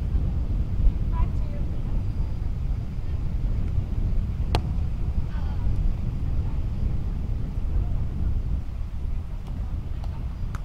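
Steady wind buffeting the microphone, with a single sharp slap of a hand striking a volleyball about halfway through.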